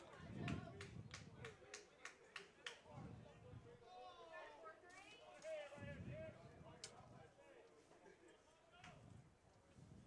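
Near-silent open-air ballpark sound: faint distant voices, with a quick run of light sharp clicks in the first few seconds.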